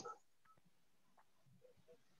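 Near silence on a video-call audio line.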